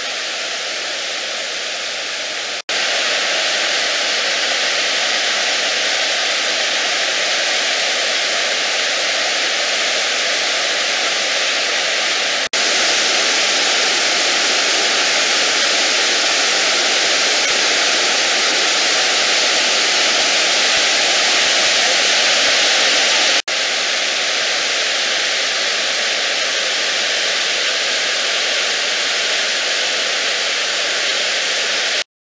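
Steady, loud rush of a waterfall and river rapids, with the water sound cutting off abruptly and resuming at a slightly different level about three, twelve and twenty-three seconds in.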